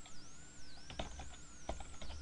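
Computer keyboard being typed on: a quick, irregular run of faint key clicks. A faint wavering high whine sits in the background.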